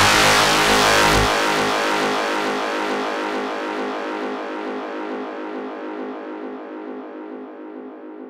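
Closing synthesizer chord of a progressive psytrance track after the beat has stopped. A deep bass note drops out about a second in, and the chord fades slowly away as the track ends.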